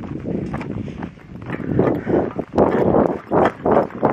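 Footsteps on a dry dirt trail at a brisk walking pace, a short scuff about every half second that gets louder and more regular after the first second or so.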